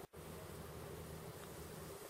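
Faint, steady low buzz, broken by a brief dropout right at the start.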